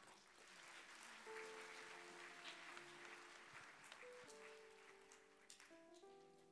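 Faint congregation applause that dies away toward the end, with soft held keyboard chords coming in about a second in.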